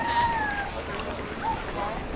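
A high-pitched shouted call from a voice at the ballfield, held for about two-thirds of a second and falling slightly in pitch, followed by faint scattered voices.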